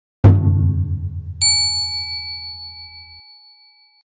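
Channel-intro sound effect for a logo animation: a deep bass hit, then about a second later a bright bell-like ding that rings and slowly fades away.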